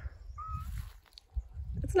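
One short, high, squeaky mew from a black-and-white cat, slightly wavering in pitch, over a low rumble.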